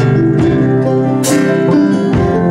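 Live folk band playing a passage without vocals: strummed acoustic guitar over held notes from electric guitar and keyboard, with a bright accent about a second and a quarter in.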